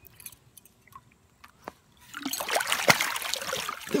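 A large rainbow trout thrashing in shallow river water as it breaks free of the hand. A burst of splashing and churning starts about halfway through.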